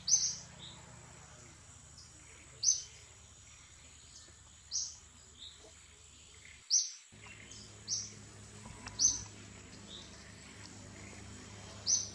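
A short, high, rising chirp-like animal call repeated about seven times, roughly every one to two seconds, over a faint steady high-pitched hum.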